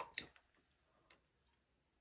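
Near silence, broken by two short clicks right at the start and a faint tick about a second in, from a plastic water bottle being handled while drinking from it.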